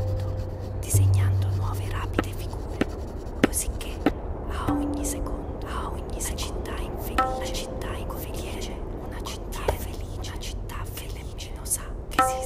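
Atmospheric soundtrack: a steady low hum that swells about a second in, a few short ringing tones, scattered sharp clicks, and whispering voices.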